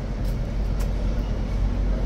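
Steady low rumble of passing road traffic, buses and cars, with a couple of faint ticks.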